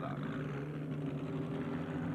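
Ferrari 250 GTO's V12 engine running steadily, its pitch holding level.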